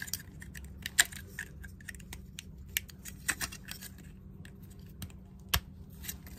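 Hard plastic model-kit parts from an old Zeong kit clicking, tapping and rubbing against each other as they are handled and fitted together: a run of irregular light clicks, with sharper ones about a second in and again near the end.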